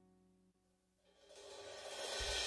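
A piano chord's last notes fade into near silence, then a cymbal roll swells up from nothing over the last half second or so, growing steadily louder.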